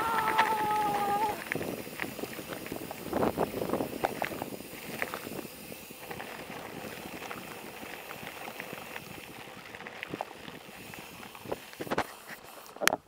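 Mountain bike rolling over a dirt and gravel road: tyre noise with irregular rattles and clicks from the bike. A held, slightly falling tone sounds over it for about the first second, and a few sharper knocks come near the end.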